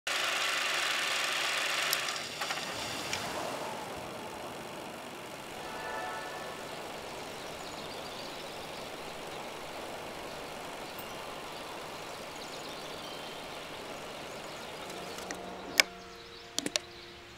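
Steady whirring noise, louder and brighter for the first two seconds and then settling lower, with a couple of sharp clicks near the end.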